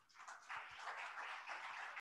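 Faint audience applause, a steady patter of clapping that starts about half a second in.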